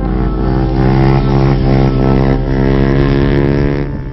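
Motorcycle engine running with a steady, unchanging note, starting to fade out near the end.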